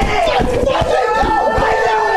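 A small group of men yelling and screaming together in wild celebration, several voices holding long shouts at once, over repeated low thumps from jumping and stomping.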